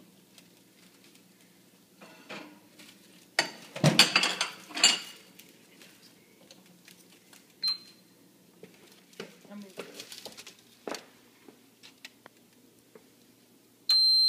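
Ceramic plates clattering as they are handled and set down, then a single short high beep from the Cuisinart toaster oven's control panel as a button is pressed, followed by light handling clicks. At the very end the oven starts beeping: the toast is done.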